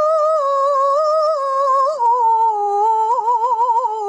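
A woman's solo voice chanting Qur'anic recitation (tilawah) in melodic tajwid style. She holds one long ornamented note, drops a step in pitch about halfway, then ends with a fast wavering trill near the end.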